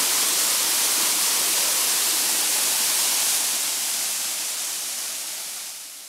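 Waterfall: falling water making a steady rushing hiss that fades out over the last couple of seconds.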